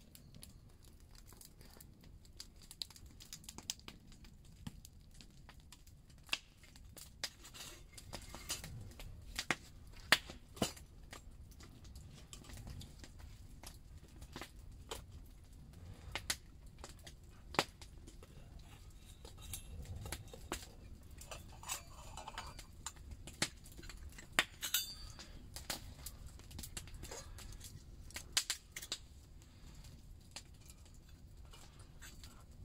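Wood campfire crackling with scattered sharp pops, and metal camping mugs and lids clinking as they are handled.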